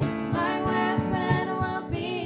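Live worship band playing: female voices singing held, wavering notes over strummed acoustic guitar, keyboard and steady cajon beats.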